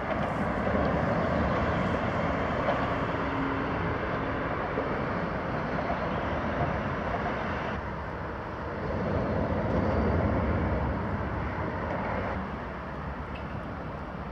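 Steady road traffic noise from passing vehicles, swelling and fading as they go by, with a sudden change in the sound about eight seconds in.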